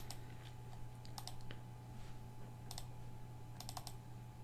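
Quiet computer mouse clicks: a few single clicks, then quick clusters like double-clicks, the last cluster near the end. A low steady hum runs underneath.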